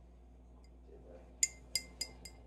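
An empty glass peanut butter jar clinking in the hand, two sharp ringing clinks in the second half.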